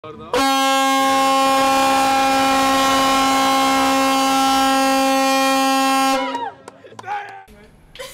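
The Dar Młodzieży's ship foghorn sounding one long, steady blast of about six seconds, its pitch sagging as it cuts off: the signal that the ship has crossed the equator.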